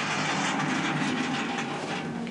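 A sliding barred jail-cell door rolling along its track, a steady metallic noise that sets in abruptly and eases near the end.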